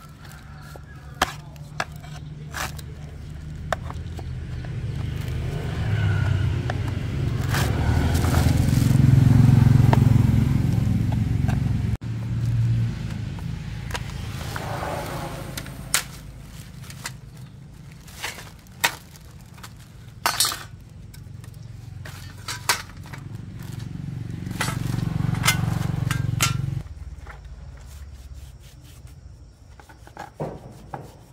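Sharp cracks and snaps of a broken motorbike license plate frame being pried and broken apart with a flat-blade screwdriver, with scraping between the snaps. Under it a low rumble swells twice and cuts off suddenly each time.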